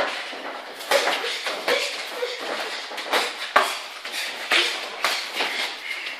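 Boxing gloves thudding and slapping irregularly as two children spar, with feet scuffing on the ring canvas.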